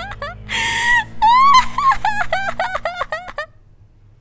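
A woman's maniacal laughter: a fast run of high-pitched 'ha-ha' bursts, broken about half a second in by a loud gasping breath in. The laughter stops about three and a half seconds in.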